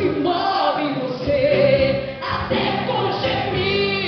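Live gospel worship song: many voices sing together, a congregation joining the song leader, over steady instrumental backing.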